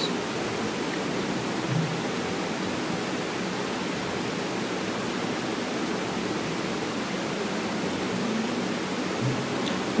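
Steady, even hiss: the background noise of the voice-over microphone, with no other distinct sound.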